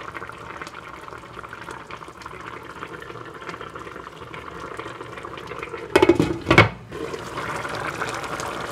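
Curry simmering in a pan with a steady crackle of bubbling. About six seconds in come two loud clanks of a glass pot lid being set on the pan.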